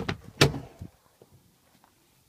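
A Toyota Land Cruiser 80's door being shut: a knock, then a louder slam about half a second later.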